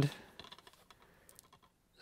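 A scatter of faint plastic clicks and taps from a DVD case being picked up and handled, dying away a little past halfway.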